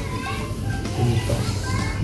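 Men talking in conversation, quieter than the surrounding talk, with other voices in the background that sound like children playing.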